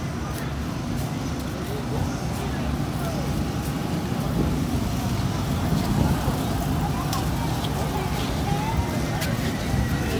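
Outdoor amusement-park background: a steady low rumble with faint distant voices and occasional small clicks, no single sound standing out.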